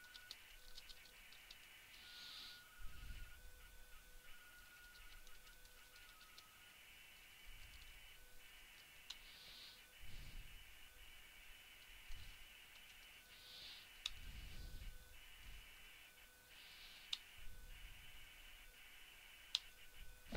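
Faint computer keyboard typing, scattered key clicks over a steady faint electronic whine, near silence otherwise.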